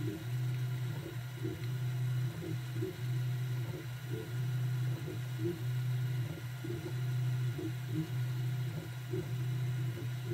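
Prusa Mini 3D printer's stepper motors running as the print head traces the first-layer skirt. A steady low hum is broken by short pauses and ticks every half second to a second, as the head changes direction at the corners.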